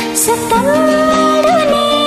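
A Manipuri song on a karaoke backing track, with a sung melody holding one long, slightly wavering note in the middle.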